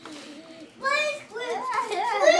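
Small Lhasa Apso mix dogs play-wrestling and calling out: one short high yelp about a second in, then a run of wavering whines and yips near the end.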